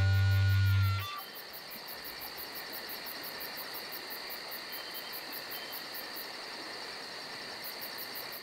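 A held low music note ends abruptly about a second in. It gives way to a night-time nature ambience: crickets chirping in a fast, even pulse over a steady high insect trill.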